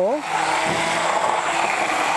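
Handheld immersion blender running steadily, its blades whirring through water and ground tiger nuts as it is worked up and down, blending the mixture into horchata.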